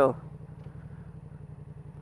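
Yamaha MT-07 motorcycle's parallel-twin engine running steadily at low revs through an aftermarket Leo Vince exhaust, a low, even pulsing.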